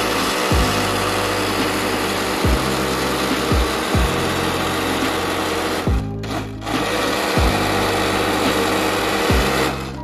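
Countertop blender running at full speed, blending a yogurt, ice and mint lassi. It cuts out briefly about six seconds in as the control is pressed, starts again, and stops just before the end. Background music with a bass beat plays underneath.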